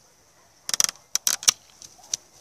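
Hand bypass pruning shears cutting through a young quince shoot: a quick run of sharp snips and clicks about two-thirds of a second in, followed by a few more isolated clicks.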